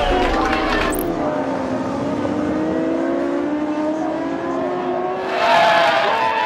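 Racing motorcycle engine at high revs, its pitch climbing steadily as it accelerates. Near the end, a group shouts and cheers loudly.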